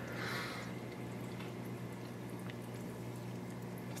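Aquarium filter water trickling steadily, with a low steady hum underneath.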